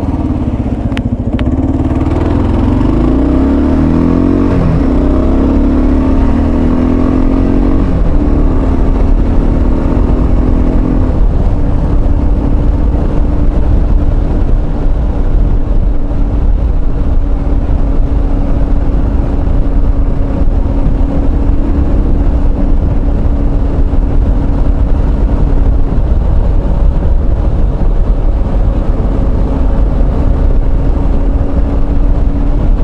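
Motorcycle engine accelerating hard through several gears during the first several seconds, then running at a steady cruising speed, heard from a helmet-mounted mic with heavy wind rush.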